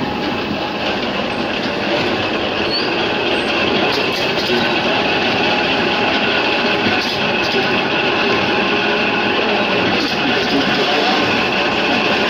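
PET can filling and sealing machine running: a steady mechanical noise from its conveyor and can turntable with a steady high whine over it, a little louder from about two seconds in.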